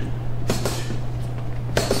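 Boxing gloves smacking focus pads in one-two punches: two quick hits about half a second in, a fainter one, then another sharp hit near the end, over a steady low hum.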